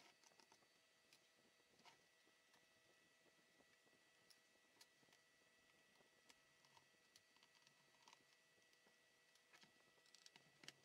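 Near silence, with faint scattered clicks and taps of a screwdriver and hands working on a laptop's plastic case.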